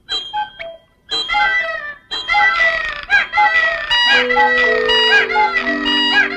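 A wall of cartoon cuckoo clocks going off together: overlapping two-note cuckoo calls, whistles and chimes with a rooster-like crow, building from about a second in over music, with low held notes joining about four seconds in.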